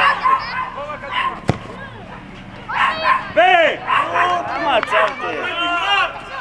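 Several voices shouting and calling across an outdoor football pitch, loudest in the second half. A single sharp thump about one and a half seconds in.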